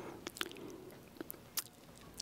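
Quiet room tone with a few faint, short clicks scattered through it.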